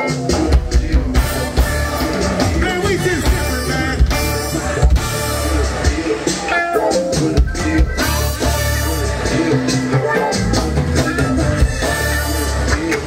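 A live band playing a groove: drum kit and conga drums, electric guitar and bass, with a singer on microphone over it.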